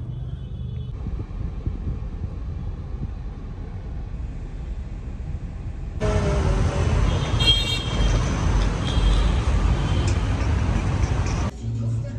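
Low steady road rumble inside a moving car, then, from about halfway, louder outdoor street traffic noise with a short horn toot.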